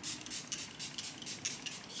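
Pump-mist bottle of Charlotte Tilbury Airbrush Flawless Setting Spray spritzing onto a face, pumped rapidly in a steady run of short hisses, about five a second.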